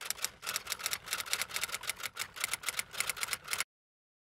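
Typewriter sound effect: a quick run of key strikes, several a second, that stops abruptly about three and a half seconds in.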